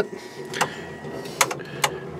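Aftermarket inline electric fuel pump running with the ignition on, a steady low hum as it pressurizes the fuel line. Three sharp clicks cut across it.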